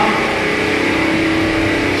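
Small engine on a seed tender, which drives the auger's pump, running steadily at an even speed.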